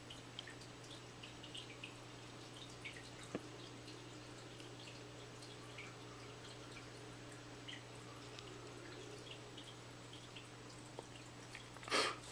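Fish tank water dripping and trickling in small scattered ticks over a steady low hum, with one sharper click about three and a half seconds in.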